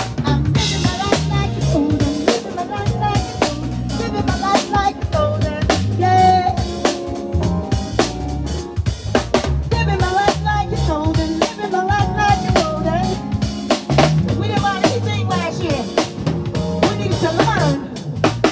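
Live band playing an instrumental passage: drum kit with bass drum, snare and rimshots keeping a steady beat under Roland Juno-DS synthesizer keyboard parts and a low bass line.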